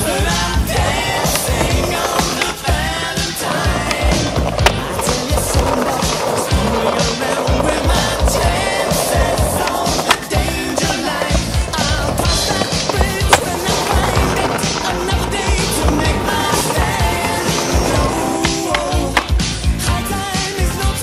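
Music with a steady beat over skateboard sounds: urethane wheels rolling on pavement and the board clacking and scraping on stone ledges, with a couple of loud sharp knocks about halfway through.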